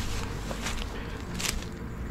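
Footsteps through dry grass and undergrowth, with a few brushing rustles of leaves and stems, over a steady low wind rumble on the head-mounted camera's microphone.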